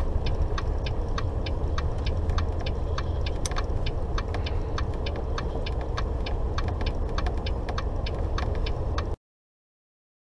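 Volvo 670 truck's diesel engine running low and steady, heard from inside the cab, with a light, even ticking about three times a second from the turn signal as the truck pulls off the highway. All sound cuts off suddenly near the end.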